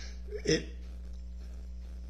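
A man's voice gives one short spoken syllable about half a second in, then pauses, leaving only a low steady hum.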